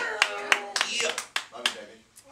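A small group of people clapping in irregular, scattered claps that thin out and die away near the end, with voices mixed in.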